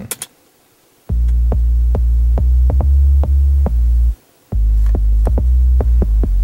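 Low synthesizer bass from Cubase's Monologue synth playing back a MIDI line transposed down an octave, with short sharp clicks in a quick, uneven rhythm. It starts about a second in, stops briefly past the middle, then resumes. A single mouse click sounds at the very start.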